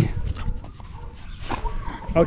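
A dog whining softly while it is petted.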